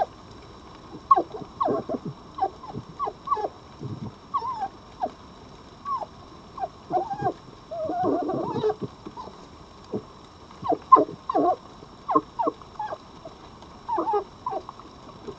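Red foxes whimpering: many short, squeaky calls that fall in pitch, coming in clusters, with a longer, rougher outburst about eight seconds in.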